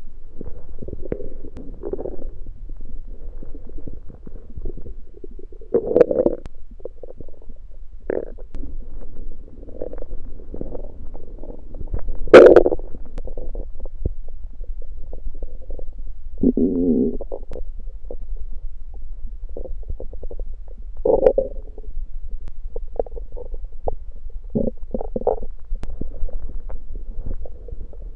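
A man's empty stomach growling and gurgling from hunger after fasting, in an uneven run of rumbles with the loudest one about twelve seconds in.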